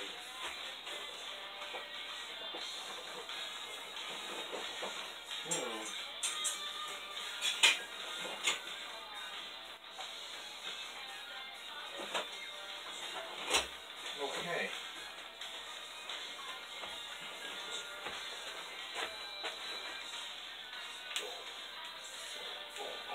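Faint music and voices playing in the room, like a television programme, with a few sharp knocks in the middle.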